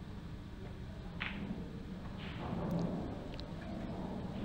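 Faint clicks of a pool shot, cue tip on the cue ball and then ball on ball, about a second apart, over a low steady hum of the hall.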